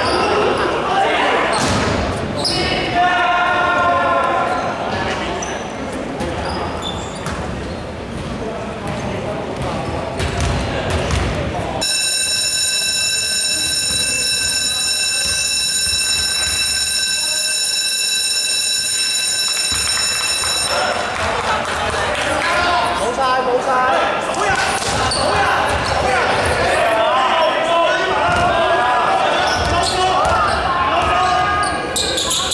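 Basketball scoreboard buzzer sounding one long steady tone for about nine seconds, starting about twelve seconds in. Around it, players' voices and a basketball bouncing on a wooden gym floor.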